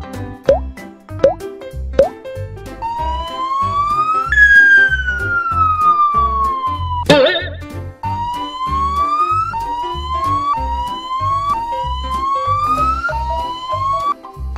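Police siren sound effect over children's background music with a steady beat. The siren tone rises, falls slowly, then rises again in several short sweeps, with a few short upward chirps near the start and a sharp hit about seven seconds in.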